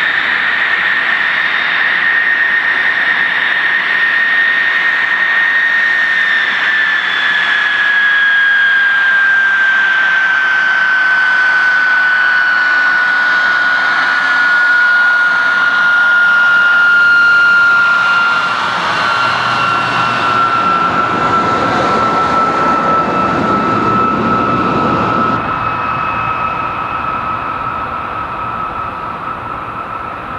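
De Havilland Venom jet fighter's engine running, a steady turbine rush with a loud high whine that slowly falls in pitch. In the second half a lower rushing noise swells up and then cuts off suddenly, and the sound eases off slightly toward the end.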